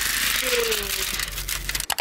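Cabin noise inside a Mercedes-Benz GLE: a steady hiss over a low rumble, with faint fine ticking and a short faint falling voice sound about half a second in. It cuts off suddenly near the end.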